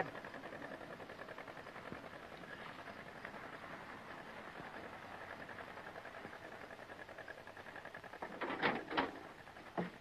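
Faint steady hiss with a thin high hum, the background noise of an old film soundtrack. A brief voice is heard about eight and a half seconds in.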